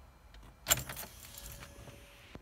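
A short jingling clatter of small clicks a little under a second in, with a faint steady tone after it.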